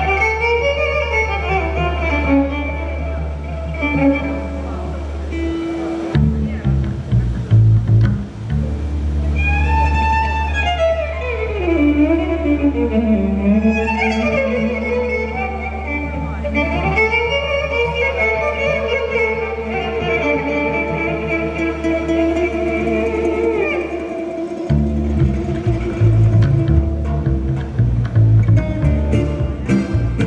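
Croatian folk band playing a drmeš live: a fiddle leads with sliding, gliding phrases over double bass, guitars and drums. The sustained low bass breaks into a choppier pulsing rhythm near the end.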